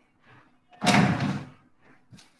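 A single noisy bang or thump about a second in, fading over about half a second, with a fainter knock just before it.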